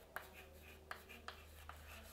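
Chalk writing on a blackboard: a few faint taps and scratches from the chalk strokes, over a low steady hum.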